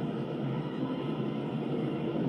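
Roller coaster train climbing its lift hill: a steady mechanical running noise with no change.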